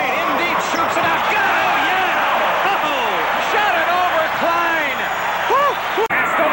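Basketball sneakers squeaking on a hardwood court during live play: many short squeaks that rise and fall in pitch and overlap one another, over a steady crowd noise.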